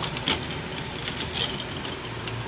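A few light clicks and a short scuff as a C4 automatic transmission's steel brake band is handled on a concrete floor, over a steady low hum.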